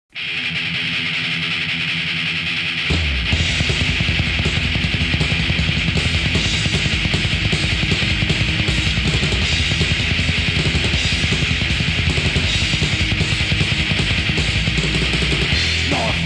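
Thrash metal demo recording with distorted electric guitar. About three seconds in, the bass and drums come in hard and the band plays a fast riff.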